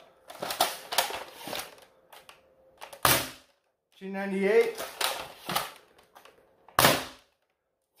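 Two shots from a spring-powered Dart Zone Pro MK4 foam dart blaster fitted with an upgraded Swift spring and aluminium barrel. Each is a single sharp crack, about four seconds apart, and the darts travel at about 300 feet per second. Light clattering handling noise comes in the first couple of seconds.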